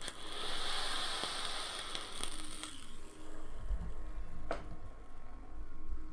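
Hiss of air and vapor drawn through an EHPro Big Bear RDTA dual-coil rebuildable atomizer, with its 0.225-ohm coils fired at 100 watts, lasting about three seconds; then quieter breathing-out of the vapor and a single click about four and a half seconds in.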